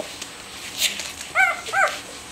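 Newborn border collie puppies squealing twice, two short high cries that rise and fall, about half a second apart, after a brief breathy rustle.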